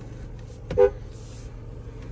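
A car horn gives one short toot a little under a second in, over a low steady hum.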